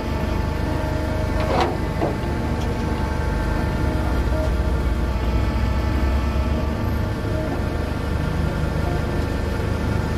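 Flatbed tow truck's engine running steadily with a low drone, with a couple of brief clinks about one and a half and two seconds in.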